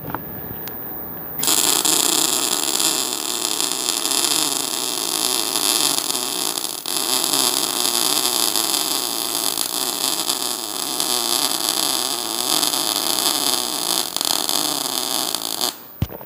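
MIG welding arc crackling steadily while running a bead with CO2 shielding gas at 5 litres per minute and the amperage turned up. It strikes about a second and a half in and stops abruptly just before the end.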